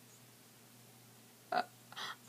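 Near-silent room tone with a faint steady low hum, then one short vocal sound from the girl about a second and a half in.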